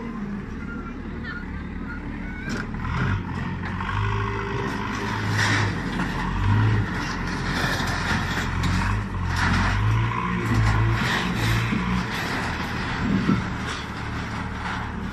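Backhoe loader's diesel engine working under load, rising and falling, while it knocks down stalls, with several crashes and scrapes of corrugated metal sheeting and timber.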